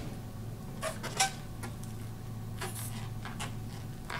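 Faint handling sounds as hands work a rubber balloon's neck over a plastic bottle-cap nozzle: a few soft rustles and clicks, about a second in and again around three seconds in, over a steady low hum.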